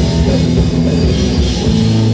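Live rock band playing loud and steady: distorted electric guitars, electric bass and drum kit together.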